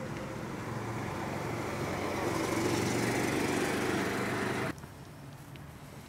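An engine running, growing steadily louder, then cut off abruptly about three-quarters of the way through.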